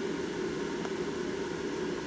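Blower fan of a Gemmy 10-foot airblown praying mantis inflatable running with a steady, high-pitched whir. The pitch comes from back pressure: the inflatable is fully inflated and little air flows through the fan.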